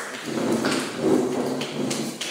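Rustling and shuffling of people moving at a table, with a few light knocks.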